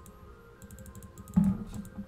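Computer keyboard typing: a quick run of key clicks starting about half a second in, with a brief low sound in the middle of the run.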